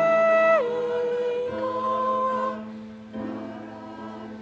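Small mixed church choir singing in long held notes. The phrase steps down in pitch about half a second in, and the singing grows softer from about two and a half seconds.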